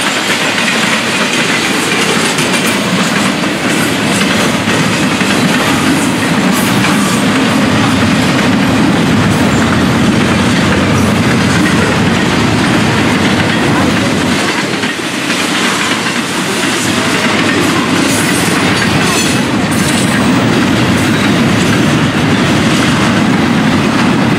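Florida East Coast Railway intermodal freight cars, double-stack container well cars and trailer flatcars, rolling past close by: a steady rumble and clatter of steel wheels on the rail, dipping briefly about two-thirds of the way through.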